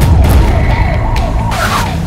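Police vehicle siren sounding fast, its pitch rising and falling about four times a second over a deep, loud rumble.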